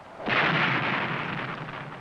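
A missile launch: a rocket motor's rushing blast that starts abruptly about a quarter second in and runs on steadily, easing slightly.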